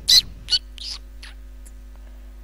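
A bird chirping: a run of short, high chirps, the two loudest in the first half-second, then a few fainter ones that die away.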